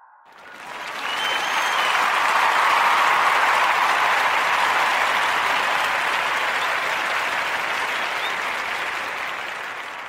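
Crowd applause that swells in over about the first two seconds and then slowly fades away.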